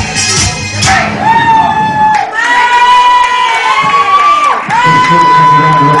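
A live song ending: a last drum and cymbal hit in the first second, then a long held high note with a couple of short breaks, while the pub crowd cheers and shouts.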